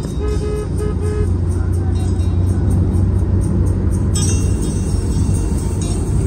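Steady low rumble of road and engine noise inside a car's cabin at highway speed, with music playing over it.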